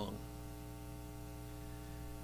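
Steady electrical mains hum, a low buzz of even tones. A man's voice finishes a word right at the start.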